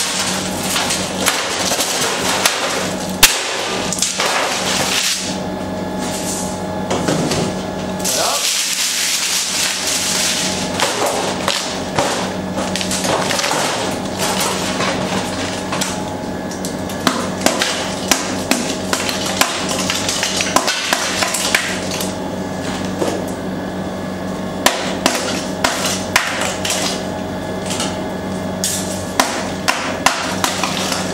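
A hardened sheet of caramelized almonds being broken up on a stainless steel table with a metal bar: repeated sharp cracks and knocks, with broken pieces clattering on the steel, over a steady hum.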